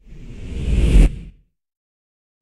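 A whoosh transition sound effect with a deep rumble, swelling for about a second and then cutting off sharply.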